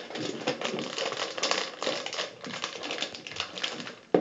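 Foil blind-bag packets crinkling and rustling as hands move them on a table, a dense run of small irregular crackles.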